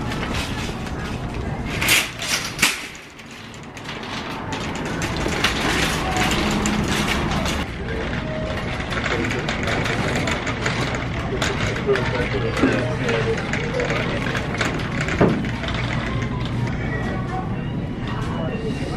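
Busy grocery-store ambience: a shopping cart rolling and rattling, with background chatter of other shoppers and in-store music. There are two loud clattering knocks about two seconds in.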